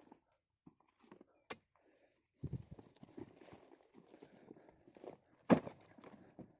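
Irregular heavy thuds and knocks of fresh oil palm fruit bunches being handled and dropped into a wooden cart, with a sharp knock early on, a run of knocks in the middle and the loudest thump near the end.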